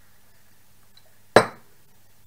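A single sharp clink of tableware a little over halfway through, ringing out briefly.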